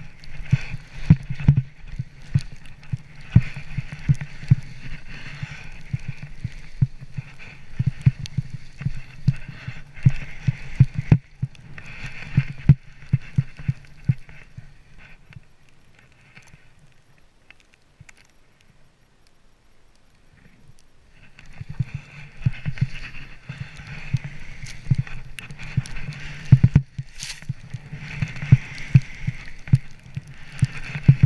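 Skis running through deep powder snow: a steady hiss with a dense run of irregular thumps and knocks as the skis bounce through the turns. It goes quieter for several seconds about halfway, then picks up again.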